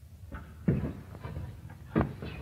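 Two loud knocks about a second and a quarter apart, with fainter bumps between, over the low hum and hiss of an old film soundtrack.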